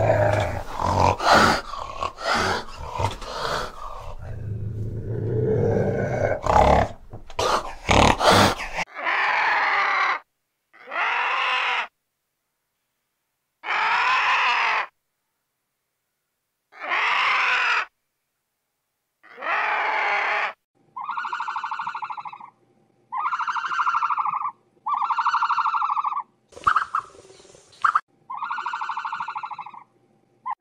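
A fishing cat growling and hissing in rough, repeated bursts for the first several seconds. Then comes a run of separate animal calls about a second long each, with silent gaps between them. The first calls are harsh and noisy; the last four carry a clear pitched tone.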